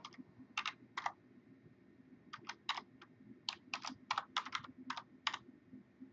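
Typing on a computer keyboard: separate keystrokes, two near the start, then a pause of over a second, then a halting run of about a dozen keys at a few per second.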